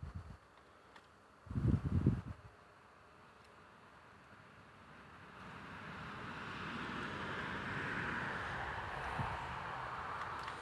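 Outdoor rushing noise. There are low rumbling buffets on the microphone about two seconds in. From about halfway through, a rushing sound swells up and then holds.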